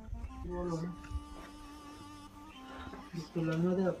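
Speech: a person talking in short phrases, with a faint steady musical tone underneath.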